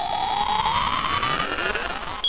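Electronic intro sound effect: a synthetic rising tone that climbs steadily in pitch over a hiss, like a riser building up.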